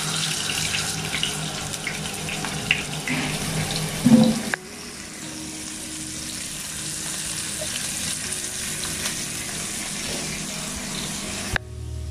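Masala-coated pomfret frying in oil on a flat griddle pan, with a steady sizzle and a few small clicks in the first four seconds as pieces are laid down.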